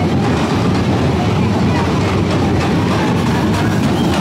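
Loud, steady street-parade din: crowd voices over a heavy low rumble.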